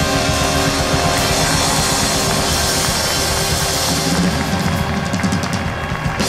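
Big band music: the band holds a long chord over the drums, and fast drum strokes take over in the last two seconds.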